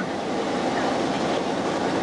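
Steady mechanical rumble and hiss of a ship's machinery, with no distinct knocks or tones.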